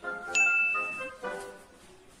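A single high ding, ringing for under a second, starts about a third of a second in, over background music of held notes that change in pitch.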